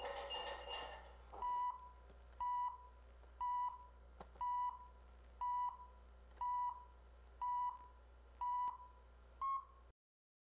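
Countdown-leader beeps: eight short beeps, one a second, the last one shorter and slightly higher in pitch, over a faint low hum.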